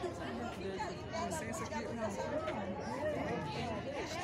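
Several people talking at once in the background: the chatter of a small crowd of visitors, no single voice standing out.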